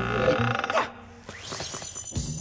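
Cartoon sound effects over background music: a sustained, wavering tone rising in the first half second, a short grunt-like vocal sound, then a tone sweeping steeply upward into a steady high shimmering ring near the end, a ghostly magic effect.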